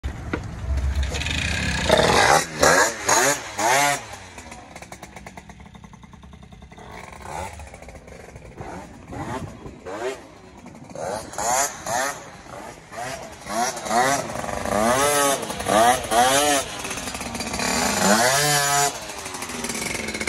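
Small two-stroke moped engine, a Batavus with a 103 engine, running on its first start and revved in repeated short blips, the pitch rising and falling with each. It is quieter for several seconds in the middle, then blipped again over and over.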